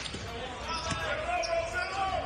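A basketball being dribbled on a hardwood court, several bounces in a row, over arena ambience and a voice.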